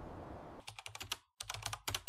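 Computer keyboard typing sound: quick light key clicks in short runs with brief pauses, starting about half a second in.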